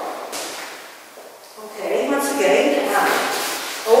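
Dance shoes stepping and tapping on a hard hall floor in a large, echoing room, with a woman's voice speaking in the second half.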